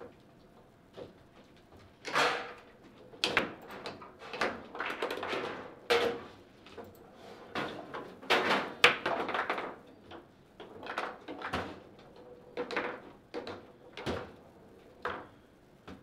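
Table football (foosball) in play: irregular sharp knocks of the ball struck by the rod figures and rods sliding and banging against the table, coming in short bursts about once a second with brief quiet gaps.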